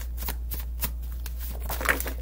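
A deck of tarot cards being shuffled by hand: a quick, irregular run of papery clicks and flicks, over a steady low hum.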